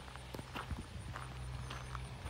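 Footsteps of a person walking, with short knocks about every half second.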